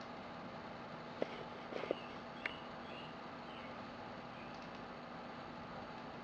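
Quiet room hiss with a few soft clicks about one, two and two and a half seconds in: TI-83 Plus calculator keys being pressed to run its self-test.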